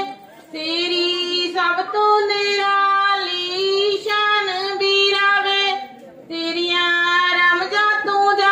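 A woman singing a Punjabi song unaccompanied into a handheld microphone, holding long sustained notes. She breaks off briefly twice, near the start and about six seconds in.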